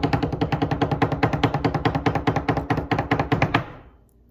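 A drum roll: rapid, even strokes, about a dozen a second, with a steady low pitch, dying away just before the end.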